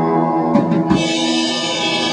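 Live rock band with electric guitar and drum kit playing the close of a song: held guitar notes, two drum hits about halfway in, then a ringing wash as the final chord sounds out.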